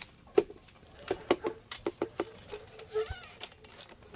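Irregular light clicks and knocks of a spring-roller slide-out window awning being unhooked and retracted by its pull strap, with a brief higher-pitched sound about three seconds in.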